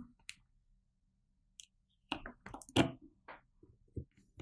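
Small clicks and knocks of a screwdriver and fingers on the plastic handle of a soldering iron as it is screwed back together: a single click near the start, then a cluster of short clicks about two seconds in.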